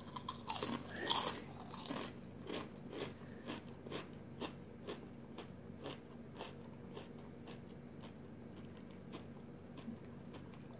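A person biting into and chewing a crunchy potato chip: a couple of loud crunches in the first second or so, then chewing crunches about twice a second that fade away after about six seconds.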